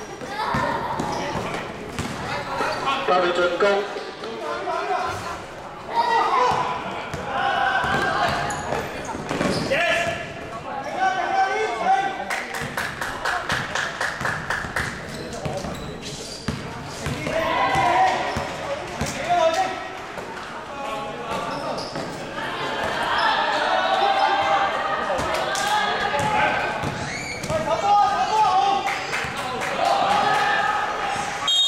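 Basketball game on an indoor court: a ball bouncing on the hard floor while players call out to each other, all echoing in a large sports hall.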